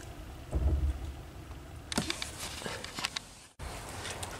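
Handling noises around the car's dashboard: a dull low thump about half a second in, then a scatter of light clicks and knocks, cut off abruptly near the end.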